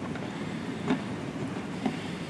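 Faint handling sounds as the antenna cable's threaded connector is screwed onto the device's GSM port and the cables are moved, two small ticks over a steady background hiss.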